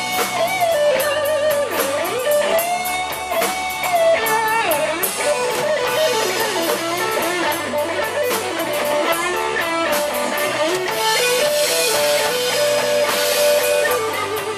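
Live rock band with a Stratocaster-style electric guitar playing a lead line full of bent, wavering notes over drums and bass.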